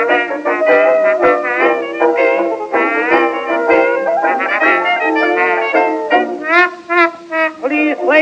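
Instrumental passage from a 1924 dance-band record, played between the sung choruses: the band plays the melody in held notes with a wavering pitch. A thinner, quieter stretch comes about seven seconds in, just before the singing returns.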